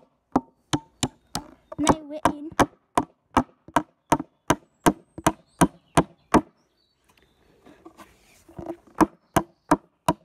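Hammer driving a nail into wood: a steady run of sharp blows, about three a second, that stops for about two seconds after the middle and then starts again.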